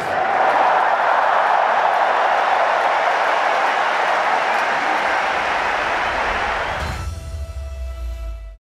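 Stadium crowd roaring, a loud, even roar with no tune in it. About seven seconds in it gives way to a short music sting of held tones over a deep bass.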